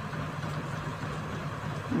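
Steady background hum of a small room with no distinct events, a pause in speech.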